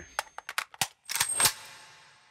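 Gunfire in a film soundtrack: a few sharp single shots, then a quick burst of several, whose ringing echo fades away over about a second.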